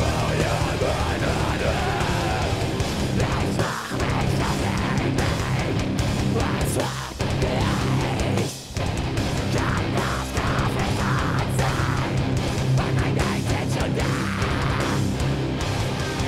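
Live metalcore band playing at full volume: distorted electric guitars, bass and drums, with vocals over the top. The band stops short briefly about four, seven and eight and a half seconds in, then comes straight back in.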